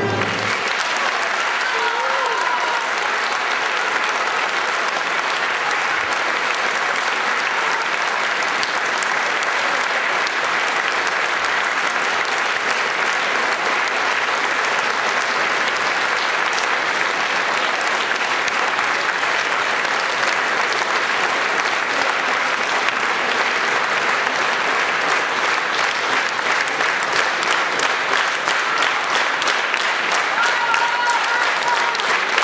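Audience applauding steadily in a concert hall just after the orchestra's final chord. The individual claps grow more distinct near the end.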